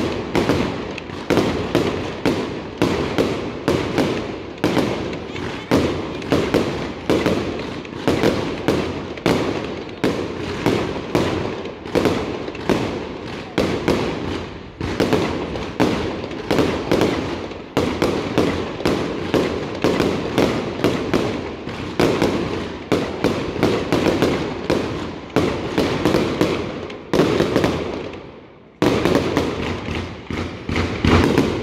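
Fireworks display: a rapid, continuous barrage of aerial shell bursts, about two sharp bangs a second, with a brief lull near the end before the bangs resume.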